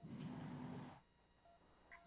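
Near silence: a faint hiss for about the first second, then room tone.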